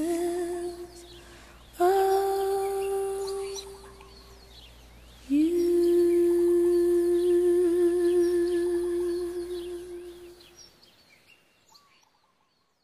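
A woman's unaccompanied voice holding long wordless sung notes into a microphone: a note already sounding, a second that slides up and holds for about two and a half seconds, then the longest, about five seconds with vibrato at its close, fading out shortly before the end.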